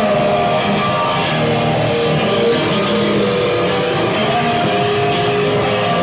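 Live noise band playing loud: distorted bass guitar through an amplifier in a dense, unbroken wall of sound, with held tones that shift in pitch every second or so.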